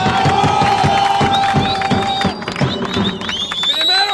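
A crowd of football supporters shouting and chanting, with one voice holding a long shouted note for the first couple of seconds.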